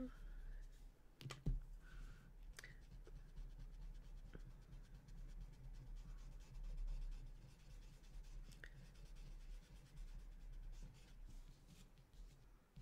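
Faint scratching and rubbing of a graphite pencil and a paper blending stump on a small paper tile while shading, with a few light clicks.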